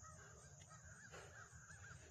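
Near silence with faint distant bird calls: a quick run of short, repeated notes starting about a second in.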